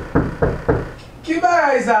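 Four quick knocks of a fist on a sheet-metal door, all within the first second.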